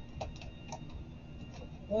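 Tarot cards being shuffled by hand: a string of short, irregular clicks as the cards flick against each other.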